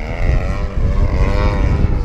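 Whine of an RC model's electric motor and propeller, rising in pitch and falling back after about a second and a half, over a low wind rumble on the microphone.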